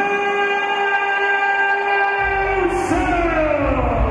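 Ring announcer's drawn-out call over the arena PA, one vowel held on a steady note for about two and a half seconds, then sliding down in pitch. A thumping bass beat from music comes in about two seconds in.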